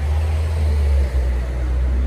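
A steady low rumble that eases near the end.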